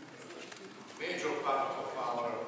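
A man's voice speaking away from the microphone, sounding distant in a large room. It is quieter for the first second and starts up again about a second in.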